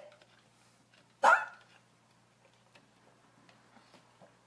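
A dog barks once, a single short bark about a second in, followed by faint small taps.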